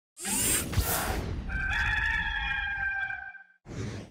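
A brief rush of noise, then a rooster crowing once in a long held call that fades out about three seconds in.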